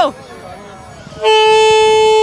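Plastic vuvuzela-style toy horn blown in one long, loud, steady note that starts about a second in.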